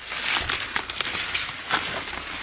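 Corn leaves and husks rustling and crackling as ears of fresh corn are snapped off the stalks by hand, with a louder crack near the end.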